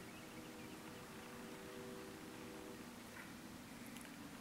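Quiet background with a low hiss and a faint steady hum that fades out about three seconds in.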